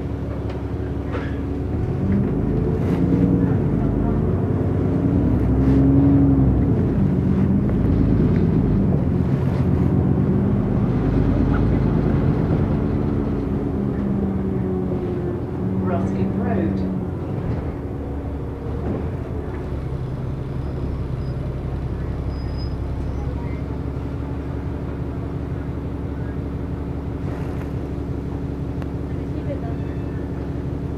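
Bus heard from inside the passenger cabin pulling away: the engine's drone rises and falls for the first fifteen seconds or so as it accelerates, then settles to a steady hum while it runs along the road.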